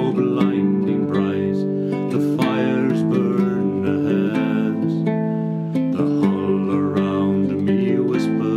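Nylon-string classical guitar playing chords in an instrumental passage of a folk song.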